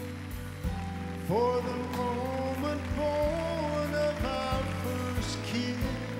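Slow soft-rock love ballad performed live: a man sings long, held notes that scoop up into pitch, over a steady sustained backing accompaniment.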